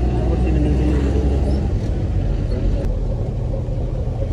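Taxi car running along a wet road, heard from inside the cabin: a steady low engine and road rumble.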